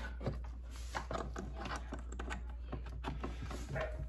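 A string of small irregular clicks and taps as an XT60 DC plug is handled and pushed into the DC input port of a portable power station.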